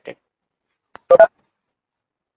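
A short electronic beep about a second in, lasting about a fifth of a second and made of a few pitches sounding together, like a phone keypad tone.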